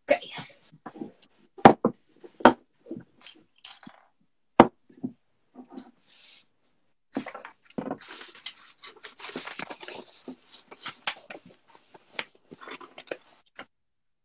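Soft pencils and crayons scratching on paper in short strokes, starting about eight seconds in. Before that come a few sharp knocks and clicks on the tabletop as the drawing tools are picked up and the drawing gets under way.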